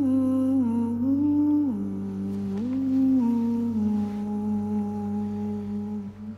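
A single voice humming a slow, wordless, lullaby-like melody over a low steady drone. It holds long notes that step down and back up, and settles on one long low note over the last two seconds.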